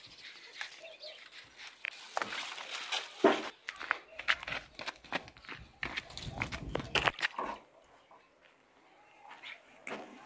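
Scuffing footsteps and scrapes on a gravel path. From about five and a half to seven seconds in, a rougher scraping, like a plastic bucket dragged over the ground.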